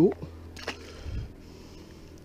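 A small perch released by hand into a lake, hitting the water with one brief splash a little under a second in, followed by a soft low bump.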